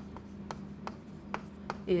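Chalk writing on a chalkboard: a run of short taps and scratches, about six, as letters are written.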